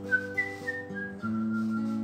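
Someone whistling a short melody over acoustic guitar chords: the whistled line jumps up, steps down over the first second, then holds one long note while the guitar changes chord underneath.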